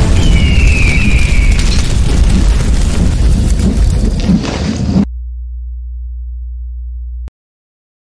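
Animated logo-intro sound effect: a loud, deep explosive rumble with a high falling screech in the first couple of seconds. It drops at about five seconds to a low steady hum that stops dead a couple of seconds later, leaving silence.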